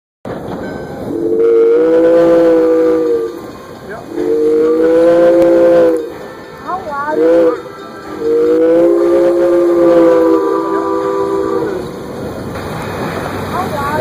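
Valley Railroad No. 40 steam locomotive's chime whistle, a chord of several tones, sounding two long blasts, a short one and a final long one: the standard grade-crossing signal.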